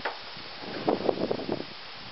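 Wind buffeting the microphone, a steady rushing noise with a few short, louder gusts about a second in.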